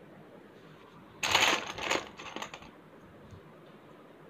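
Small plastic letter tiles of a word board game clicking and clattering together as a hand sorts through them and picks one out: a cluster of clicks lasting about a second and a half, starting about a second in.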